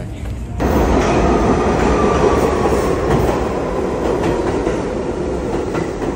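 New York City subway train moving alongside the platform: loud train noise that starts suddenly about half a second in and eases off slightly toward the end.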